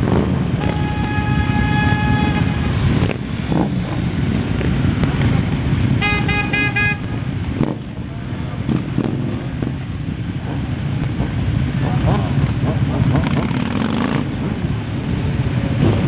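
Motorcycle engines running as several bikes ride past one after another. A horn sounds for about two seconds near the start, and about six seconds in a horn gives a quick run of short toots.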